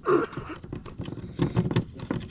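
A short breathy throat sound at the start, then a run of light irregular metallic clicks and knocks from the snowmobile's drive chain being handled at the chaincase.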